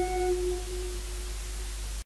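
The final note of a Thai piphat mai nuam (soft-mallet) ensemble ringing out and fading away: the higher partials die within about a third of a second, the lowest tone lingers until near the end. A steady low hum and hiss from the old recording remain beneath it.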